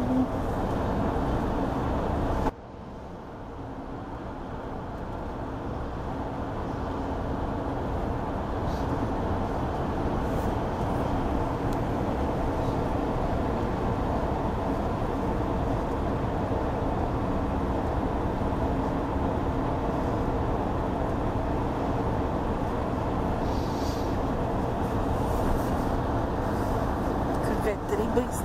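Steady road and engine noise heard from inside a moving car. It drops abruptly about two and a half seconds in, then builds back up and runs evenly.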